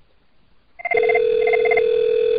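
Computer softphone call setup: about a second in, a steady ringback tone starts and keeps going, and over it the called Cisco IP Communicator softphone rings with two short pulsing bursts.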